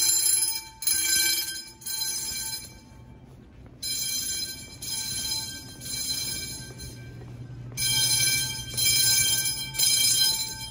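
Electric fire alarm bells (red round gongs) ringing in bursts that start and stop every second or two, with short breaks in between, during a bell test.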